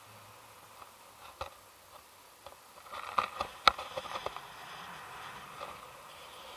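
Handling noise on the camera: a single click, then about three seconds in a short flurry of sharp clicks and knocks, the loudest near the middle, with rustling of harness and clothing that carries on afterwards.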